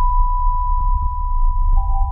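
Bass-boosted electronic music: a held pure synth tone over a deep, pulsing sub-bass, with a second, slightly lower tone joining about three-quarters of the way through.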